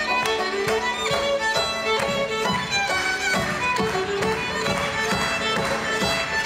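Live folk-jazz band in an instrumental break: a fiddle plays the melody over a steady plucked rhythm from banjo and double bass.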